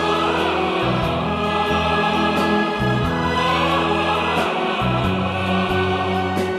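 Orchestra and choir performing live, the voices holding a long sung 'ah' over a bass line that shifts note every second or so.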